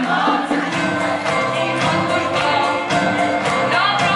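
A choir of young mixed voices singing a Christmas carol through microphones, over a light rhythmic accompaniment.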